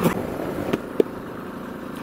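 Single-cylinder engine of a KTM 690 Enduro R with a Wings titanium exhaust, running steadily as the bike is ridden, heard together with wind noise on the onboard camera. Two short clicks come about three-quarters of a second and a second in.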